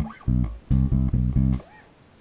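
Electric bass guitar played fingerstyle: a run of short plucked notes from a D Dorian bass line, several coming in quick succession in the middle, then a brief pause near the end.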